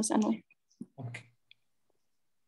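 A man's voice speaking briefly, cutting off about half a second in, followed by a short low murmur about a second in and a faint click.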